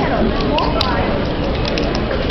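A fingerboard clicking a few times against a cardboard surface: one sharp click near the middle and a couple of lighter ones near the end. Steady hiss and background voices run underneath.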